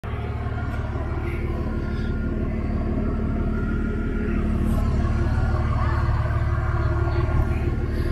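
Nissan Patrol's 4.2-litre turbo-diesel engine idling: a steady low rumble.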